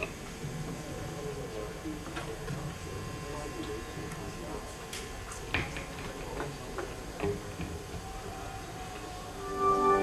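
Low chatter with scattered clicks and knocks between songs; then, about nine and a half seconds in, sustained organ-like keyboard chords fade in and grow loud as the next song begins.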